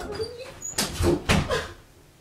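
A dog barking sharply, four short barks in two quick pairs about a second in.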